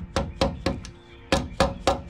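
Mallet tapping a nut insert tool to drive a nut insert into a hole in a pickup's bed side, sharp metallic knocks. About five quick taps, a short pause, then three more.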